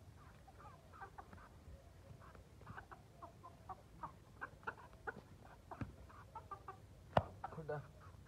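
Aseel chickens clucking in many short, separate calls, with a sharp knock a little after seven seconds in.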